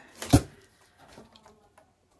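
A single sharp knock about a third of a second in, then faint small handling sounds.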